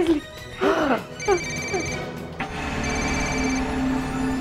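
A telephone ringing: an electronic ringtone trilling in short bursts, twice, about a second and a half apart, over dramatic background music that settles into a steady low drone about halfway through.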